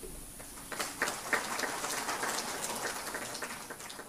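Audience applauding. The clapping breaks out about a second in and thins out toward the end.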